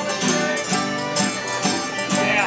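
Cajun band playing live: a diatonic button accordion, fiddle, banjo and acoustic guitars together, with a steady beat of about two strokes a second.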